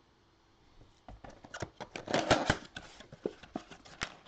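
Gloved hands handling cardboard trading-card boxes and cards: a quick, irregular run of clicks and rustles starting about a second in, loudest around the middle.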